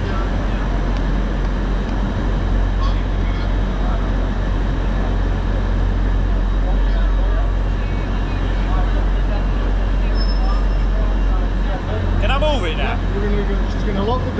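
Steady low hum of a five-car LNER Azuma train standing at the platform, under the general noise of a busy station. A voice is heard briefly near the end.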